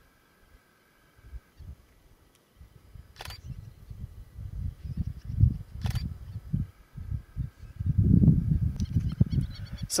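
Two shutter clicks from a Canon EOS 1000D DSLR mounted on a spotting scope, about three and six seconds in, over a low, uneven rumbling that grows louder through the second half.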